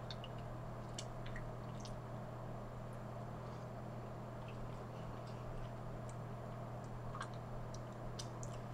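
Quiet chewing of a folded slice of pizza, with faint wet mouth clicks every second or so, over a steady low electrical hum.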